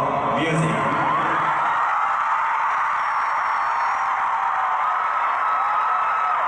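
Stadium crowd of fans screaming and cheering, a dense high-pitched roar of voices that swells about a second in and holds steady.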